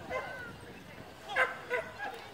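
A dog whining briefly, then two short, loud yips a little over a second in.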